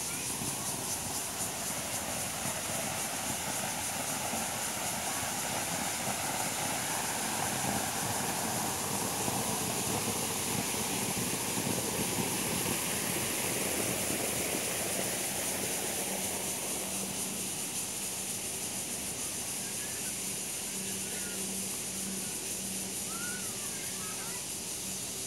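Outdoor park ambience: a steady wash of noise, swelling somewhat in the middle, with a constant high hiss and a few short chirps near the end.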